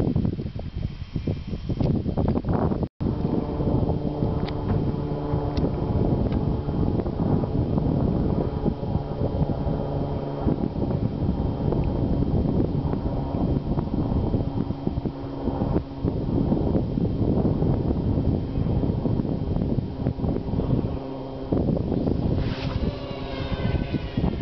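Steady wind buffeting the microphone in open ground, a loud low rumble with a brief break about three seconds in.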